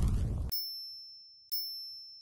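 Logo sting of a news outro: the tail of a whoosh, then two high, bell-like dings about a second apart, each ringing out and fading.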